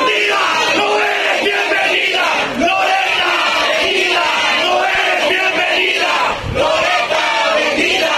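A crowd of protesters shouting and yelling over one another, many raised voices at once.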